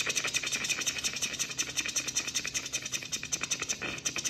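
Felt-tip marker scribbling on paper in quick, even back-and-forth strokes, many a second, as a small area is shaded solid black.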